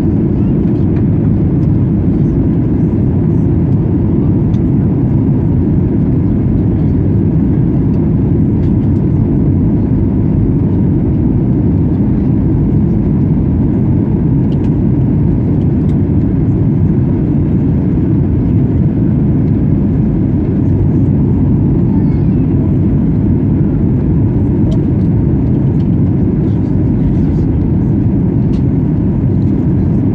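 Steady low roar of a Boeing 737-900ER in flight, heard inside the cabin at a window seat over the wing: engine and airflow noise, loud and unchanging.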